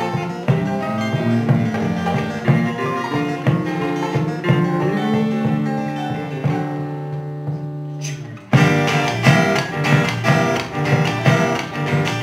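A live acoustic band playing an instrumental passage with plucked acoustic guitars and a hand drum. About two-thirds of the way in the playing thins to a held chord that fades, then the full band comes back in suddenly with sharp drum strikes.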